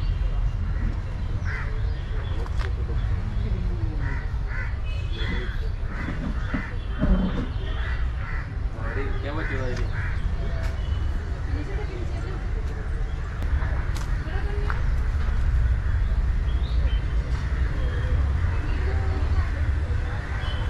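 Voices talking in the background with bird calls, over a steady low rumble.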